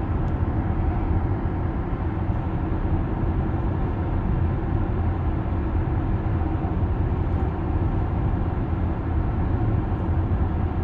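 Steady low road and tyre rumble heard inside the cabin of an electric Tesla Model S cruising at highway speed, about 60 mph.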